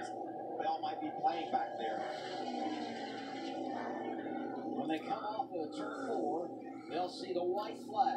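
Television sound of a NASCAR race broadcast playing in a small room: a commentator talking over a steady background of race noise.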